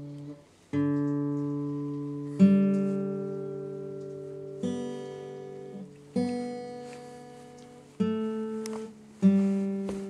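Acoustic guitar played in the room: six single strummed chords, one every second and a half to two seconds, each left to ring and fade before the next.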